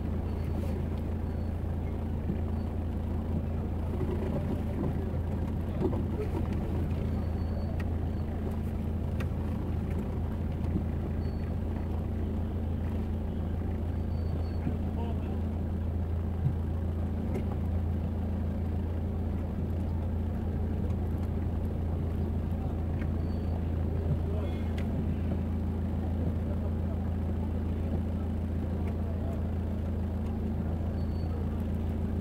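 Car engine running with a steady low hum in slow, stop-and-go street traffic.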